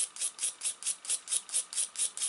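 A small brush scrubbing back and forth over a copper-nickel coin, about five quick scratchy strokes a second. It is brushing off the blackened layer that electrolysis has loosened, to speed up the cleaning.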